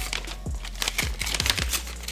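A paper mailing envelope being torn open and crumpled by hand: a quick run of crinkles and rips.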